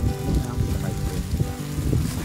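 Wind gusting on the microphone in uneven low rumbles, with music playing steadily in the background.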